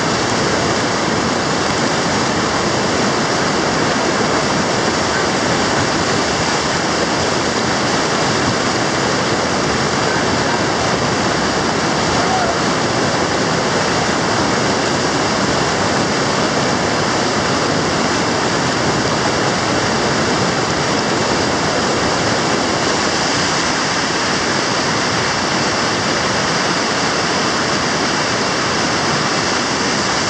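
River whitewater rapids rushing loudly and steadily: one unbroken wash of churning water.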